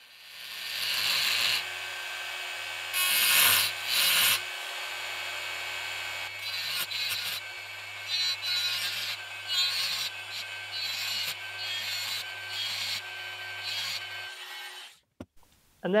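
Handheld rotary mini grinder cutting notches into the steel edge of a plane blade: the motor spins up and runs steadily, with a series of short, louder grinding bursts as the bit bites into the steel, then cuts off shortly before the end.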